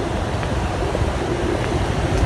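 Wind rumbling on a handheld phone's microphone outdoors, a steady low noise with no distinct events, with a faint steady hum underneath.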